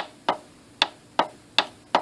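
Plastic push-button switch on an electronics trainer clicking repeatedly as it is pressed and released, about six sharp clicks in two seconds.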